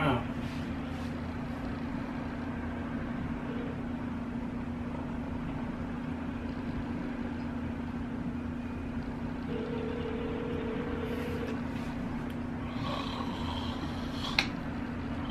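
A smartphone on speaker placing a call: a steady low hum runs underneath, and about two thirds of the way in the phone's speaker plays one ringback tone lasting about two seconds.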